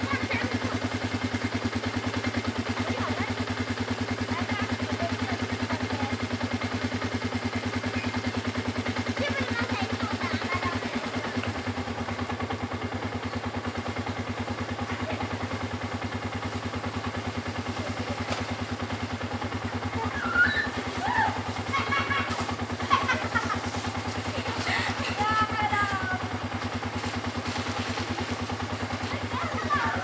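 Children shouting and calling out, with a cluster of high-pitched shouts in the second half, over a steady low hum.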